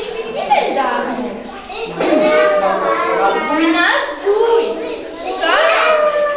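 Young children's voices talking and calling out, several at once.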